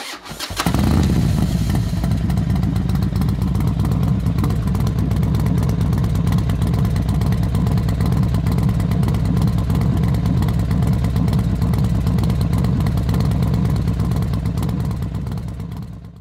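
Motorcycle engine catching about half a second in, then running steadily with a dense, even pulse, and fading out near the end.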